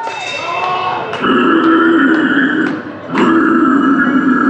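Two long guttural death-metal growls into a microphone over the PA, each about a second and a half, the first starting just over a second in and the second about three seconds in. Quieter voices fill the first second.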